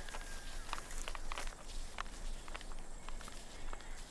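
Barefoot footsteps through dry rice stubble: an irregular series of light crackles and rustles, one with each step.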